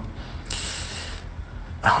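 A short hiss lasting under a second, about half a second in, over a steady low hum, in a pause between a man's sentences.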